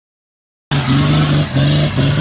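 Off-road 4x4's diesel engine revving hard under load as it climbs a dirt trail, starting abruptly after a brief silence, with a short dip in throttle about one and a half seconds in.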